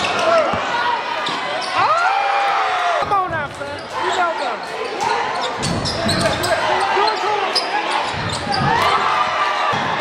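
A basketball being dribbled on a hardwood court, its bounces knocking repeatedly, under the shouts and chatter of spectators and players.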